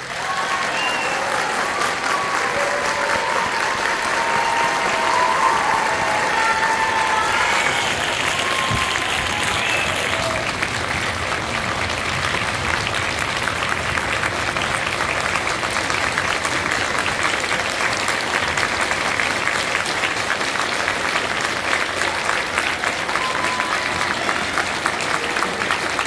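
Large theatre audience applauding, starting suddenly as the concert band's final piece ends and going on steadily, with a few voices calling out in the first several seconds.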